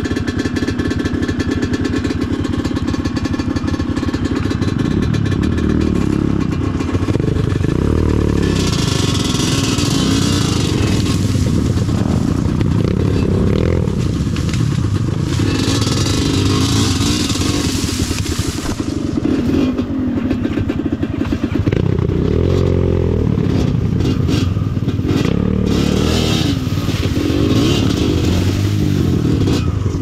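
Yamaha DT125's single-cylinder two-stroke engine at low speed, its revs repeatedly rising and falling as the bike is worked through dense cane. Several spells of dry cane stalks and leaves scraping against the bike.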